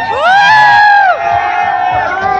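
A crowd cheering and shouting, with one loud drawn-out whoop that rises and falls over about the first second, followed by more held shouts.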